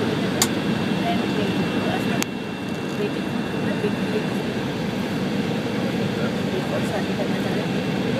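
Cabin noise inside an Embraer 170 taxiing: the steady rumble of its General Electric CF34-8E engines at taxi power, with a thin steady high tone running through it. Two sharp clicks stand out, one near the start and one about two seconds in, after which the noise drops a little.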